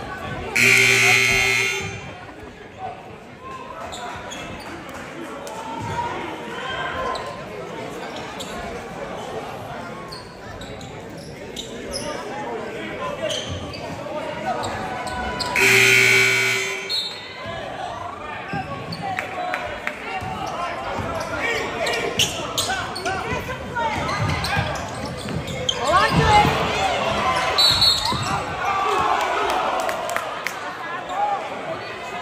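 Gym scoreboard horn blasts twice, each about a second long: once near the start as the teams come out of timeout huddles, and again about halfway through. Between them a basketball is dribbled, crowd voices carry on, and sneakers squeak near the end, all echoing in a large gym.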